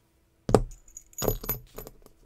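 A small brass Best-style interchangeable lock core set down on a hard tabletop with a sharp knock about half a second in, then its keys put down beside it, clinking with a brief high metallic ring, followed by a few light clicks.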